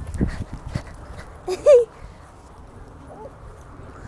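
A dog lets out one short, high yelp about one and a half seconds in, after a second of rustling and crunching from paws and feet on wood-chip mulch.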